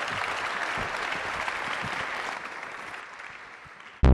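Audience applauding, a dense patter of clapping that fades out over the last second or so.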